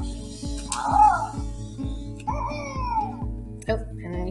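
A Coding Critters robot toy plays its electronic tune with a steady beat of about two pulses a second while it carries out its programmed steps. Two short cartoon animal calls sound over it, the second sliding down in pitch.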